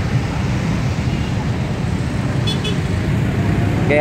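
Road traffic in a jam of cars, motorcycles and minibuses: a steady low rumble, with two short high beeps about two and a half seconds in.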